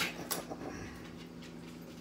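Kitchen items handled at the counter: two sharp clicks about a third of a second apart at the start, then a few faint ticks, over a steady low hum.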